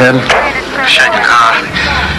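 Mostly speech: a voice on a handheld two-way radio saying "go ahead", followed by more brief talk.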